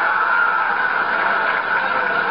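Studio audience laughing, a loud, steady wash of crowd laughter that holds through the whole moment.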